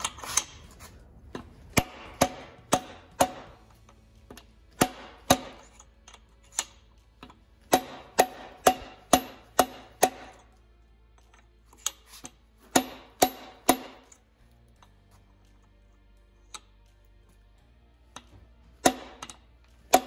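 A new steel crankshaft timing sprocket being driven onto an LS engine's crank snout by repeated sharp metal-on-metal strikes, with the old sprocket used as the driver, until it seats. The blows come in groups of two to six, each ringing briefly.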